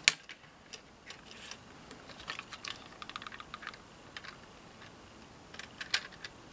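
Small hard clicks and taps of a plastic model railway coach being handled and set down on a short length of model track. A sharp double click comes right at the start, then a quick scatter of small clicks in the middle and a few more near the end.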